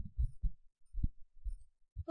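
About six dull, low thumps at irregular intervals, with no higher sound among them.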